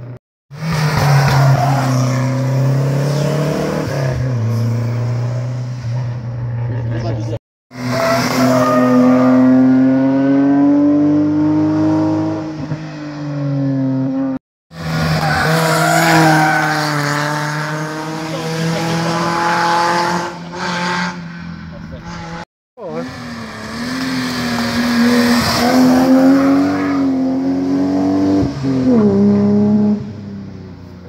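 Historic rally car engines revving hard as the cars climb past, the pitch rising and dropping with each gear change. The sound breaks off abruptly four times between short clips.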